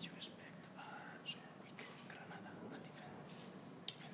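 Faint whispered speech close to the microphone, in short broken phrases, with a brief click near the end.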